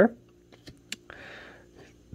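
Trading cards being handled: a few light clicks and a short soft rustle as a card is set down on a pile on the table.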